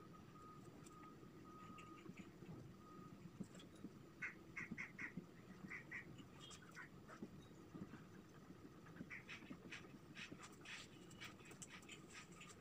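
Faint squeaks and scratches of a marker pen writing on a whiteboard, in clusters of short strokes starting about four seconds in.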